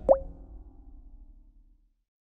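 Logo sting sound effect: a quick upward-gliding pop just after the start, its tone and a low rumble fading away over about a second and a half.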